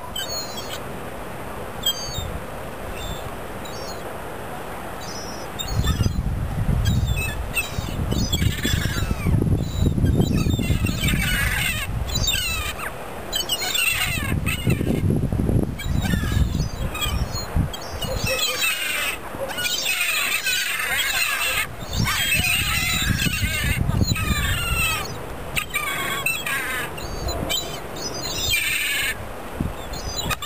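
A flock of gulls calling, with many overlapping calls coming thick and fast from about eight seconds in. A low rumble comes and goes underneath.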